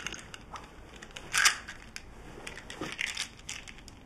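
A cloth pillow and pillowcase rustling and crinkling as it is squeezed and pulled about by hand, in short irregular bursts, the loudest about a second and a half in.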